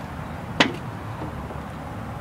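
A single sharp knock about half a second in, over a steady low background hum.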